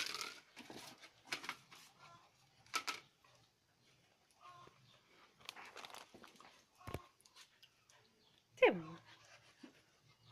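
A German Shepherd puppy playing with a rope tug toy on concrete: scattered short scuffs, rustles and mouthing noises. Near the end comes one loud cry that slides steeply down in pitch.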